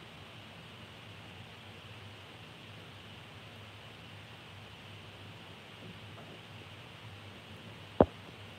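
Faint, steady hiss with a low hum: quiet room tone with no distinct sounds.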